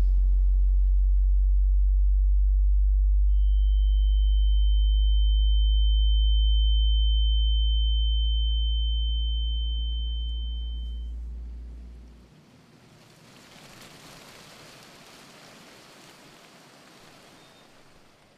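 Synthetic sound effect: a loud, deep, steady hum, joined about three seconds in by a single high-pitched whistling tone. Both fade away around twelve seconds in, leaving only a faint hiss.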